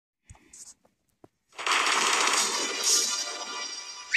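Cartoon audio run through the 'G Major' edit effect, layered and pitch-shifted into a harsh, distorted music-like sound. A few faint clicks come first, then about one and a half seconds in it cuts in loud and dense and stays that way.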